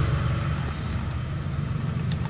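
Low rumble of a passing freight train, slowly fading as the train moves away.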